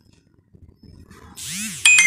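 A metal ladle scraping across a metal kadai of roasting paneer, with a rising hiss. Near the end it strikes the pan once, and the pan rings on in several high tones.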